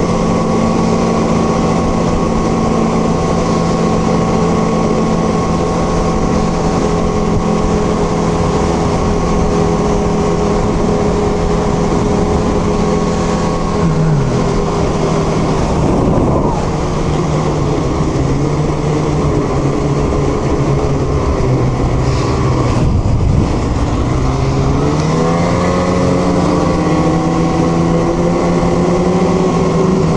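Two-stroke snowmobile engine running at speed under a loud rush of wind and track noise. About halfway through the engine note drops as the sled eases off, then climbs again near the end as it accelerates.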